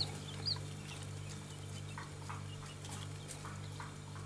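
A few faint, high peeps from baby quail and chicken chicks, mostly in the first half-second, over a steady low hum.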